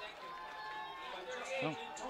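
Faint, steady background ambience of an outdoor football game's broadcast, with a man's voice saying one short word near the end.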